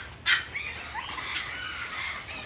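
Aviary birds calling: one harsh, noisy call about a quarter second in, ending a quick run of such calls, then faint chirps from other birds over a steady low background.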